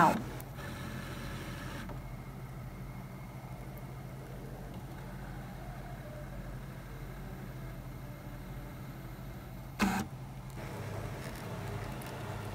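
Brother ScanNCut machine's motors running steadily while its carriage drives a felt-tip fabric pen across the mat, drawing an outline. A short voice-like sound cuts in just before ten seconds in.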